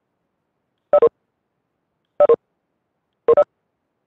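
Two-note electronic notification chime from video-call software, sounding three times at roughly one-second intervals; each chime is two short tones in quick succession, and the last one has its two notes in the reverse order.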